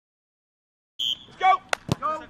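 Silence, then about a second in a short shout and two sharp kicks of a football close together on a grass pitch.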